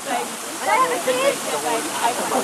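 Voices of a small group chatting at once, over a steady rushing background noise.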